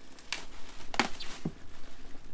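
Plastic trash bag being opened by hand, rustling and crinkling in a few short crackles, the loudest about a second in.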